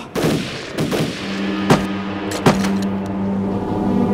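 Several scattered gunshots in a shootout, the two sharpest near the middle. From about a second in, a low, steady droning tone with overtones comes in and grows toward the end.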